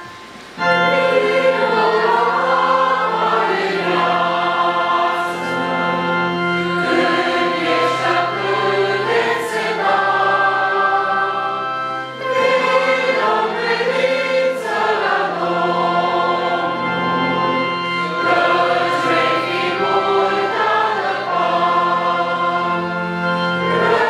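A church congregation sings a closing hymn together over sustained organ chords. The voices come in about half a second in and carry on through the verse.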